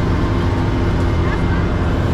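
Boat engine running steadily alongside a ship's hull, with a low, even hum.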